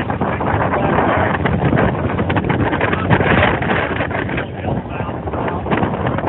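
Strong wind buffeting a phone's microphone over rough, choppy sea, a steady loud rush with irregular gusty buffets, mixed with the wash of waves.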